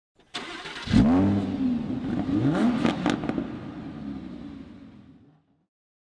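An engine revving several times, its pitch rising and falling. It starts suddenly, is loudest about a second in, and fades away before the end.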